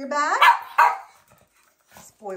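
Small dog barking, two barks in quick succession in the first second, the first rising in pitch.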